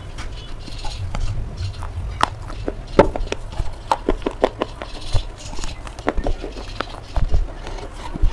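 Thin, layered slate slabs cracking and crunching as they are snapped apart: a run of sharp, irregular snaps and crackles at uneven intervals, the loudest about three seconds in.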